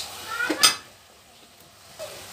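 Metal spoon clinking and scraping against an aluminium kadhai of thick carrot halwa being stirred, with one sharp clink about half a second in, then quieter.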